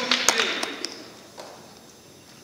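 Audience applause tailing off: a few scattered claps and some voices, dying away about a second in.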